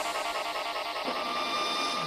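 Psytrance track in a breakdown: the kick drum and bassline have dropped out, leaving quieter layered synth textures without a beat.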